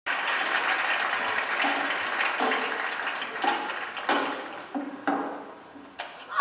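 Audience applauding, the clapping fading away over several seconds, with a few last separate claps near the end.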